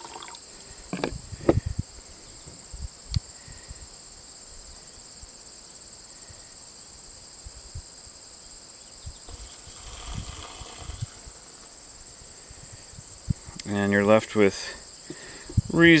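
Steady high insect chirring, crickets, runs under everything. A few light knocks come about a second in, and around ten seconds in there is a brief soft pour as rinse water is tipped from a glass jar into a plastic tub.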